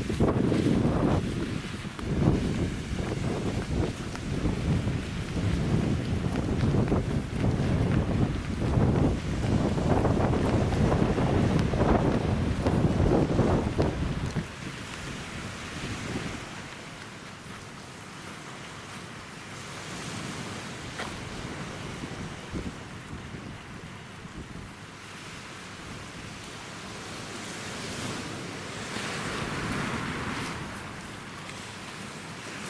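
Strong gusty wind buffeting the microphone with a loud low rumble, then a sudden drop about halfway through to a softer, steady rush of wind and surf.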